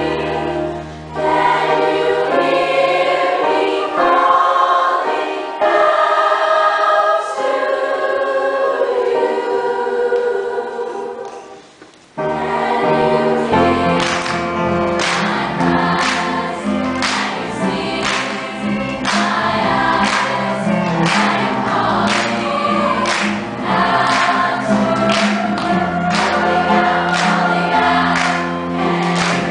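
A girls' school chorus singing. About twelve seconds in, the sound drops away briefly. Then the singing resumes with the singers clapping along in time, steady claps roughly every second.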